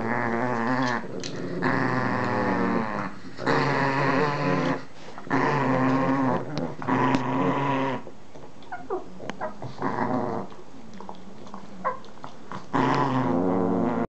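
A dog growling in repeated low bouts of one to three seconds, about six in all, while guarding a rawhide chew bone shared with another dog. A few soft clicks come between the growls.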